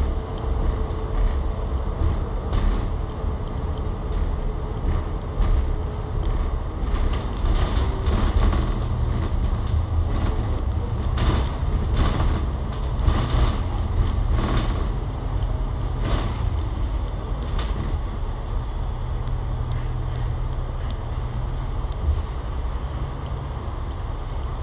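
Cabin noise on the upper deck of an Alexander Dennis Enviro500 MMC double-decker bus under way: steady rumble from its Cummins L9 diesel and the road, with body rattles and knocks through the middle stretch. The noise eases slightly near the end as the bus slows in traffic.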